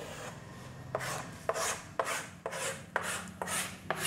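Rhythmic scraping strokes on a classroom writing board, about two a second, each starting with a sharp tap as the writing tool meets the board.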